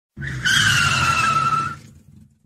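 Car braking hard to a stop, its tyres squealing in one long screech that falls slightly in pitch over a low rumble. The squeal stops after about a second and a half and the sound fades out.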